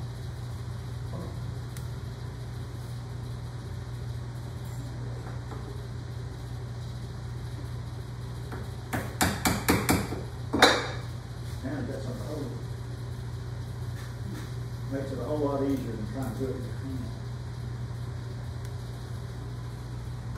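A quick run of about six light wooden knocks lasting a second, then one sharper knock with a short ring, as a small wooden stringing-thinning block is handled against a workbench. A steady low hum runs underneath.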